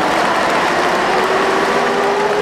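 Steady roar of street traffic, with a long held tone that comes in shortly after the start.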